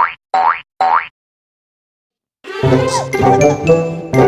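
Three quick rising 'boing' cartoon sound effects, each a short upward slide in pitch, followed by a second of dead silence. Then light, jingly background music starts about two and a half seconds in.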